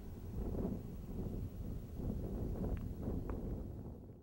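Wind buffeting the microphone outdoors: an uneven low rumble that swells and dips in gusts.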